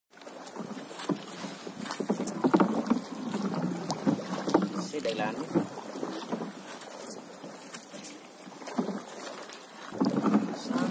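A wooden paddle working the water beside a small wooden boat, with a few sharp knocks against the hull, and a man's voice talking at times.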